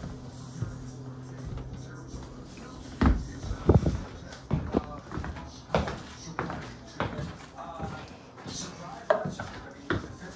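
Footsteps and handling knocks, about one thump a second from about three seconds in, over a steady low hum at the start, with faint voices underneath.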